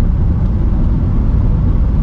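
Steady low rumble of engine and road noise heard inside a manual-transmission car's cabin while it drives at low speed in traffic.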